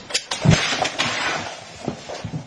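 A cat landing with a thump, then about a second of rustling and scrabbling as it pushes its head into a small plastic wastebasket with a plastic bag liner.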